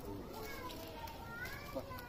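Faint, distant voices, children's among them, with short rising calls.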